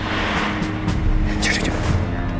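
Tense drama underscore with a steady low drone, under a man's voice speaking a short line.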